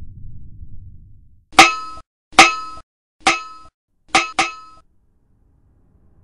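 Five metallic clangs, each ringing briefly and then cut off short, the last two close together: a cartoon sound effect of a thrown hand grenade bouncing before it lands.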